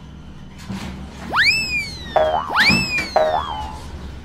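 Two cartoon 'boing' sound effects about a second and a quarter apart. Each is a whistle that sweeps quickly up and then slides slowly down, followed by a short buzzy twang, as the animated trash bin bounces.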